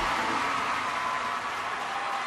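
Steady, even hiss of a large hall's ambience, with no clear single event.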